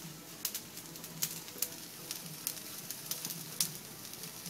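A bird cooing softly in short low phrases, over the faint crackle of food on a hot grill that gives irregular sharp pops.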